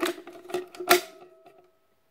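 Hollow plastic shoulder stock of an airsoft Mauser M712 being handled: three sharp clicks and knocks, the loudest about a second in, each setting the spring in the stock's attachment mechanism ringing through the hollow plastic, with a ringing tone that fades out over about half a second. A really annoying rattle-and-ring that comes with every movement of the stock.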